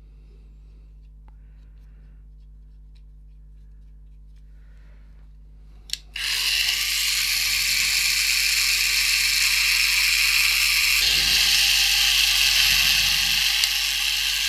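Small electric motor and plastic gearbox of a 1984 Tomy Dingbot toy robot, its gears freshly greased. It switches on with a click about six seconds in and then runs steadily and loudly. Before that there is only faint handling of the plastic parts.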